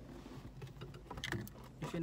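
A few short clicks and rustles inside a car cabin as a man leans toward the dashboard, over a steady low hum; his voice starts near the end.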